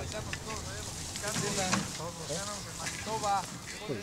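Outdoor field ambience: distant voices of workers talking in short, scattered bits, over a steady low rumble of wind, with a few faint sharp clicks.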